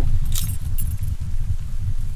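A bunch of keys jingling briefly about half a second in, as they are handed over, over a steady low rumble.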